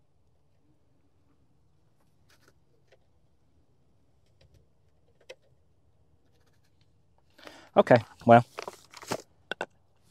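Near silence: a faint low rumble and a few faint ticks, with a short spoken phrase near the end.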